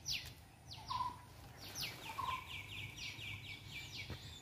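Birds calling: sharp, high, downward-sweeping notes, running into a quick series of about five notes a second in the second half, with two brief lower whistles about one and two seconds in.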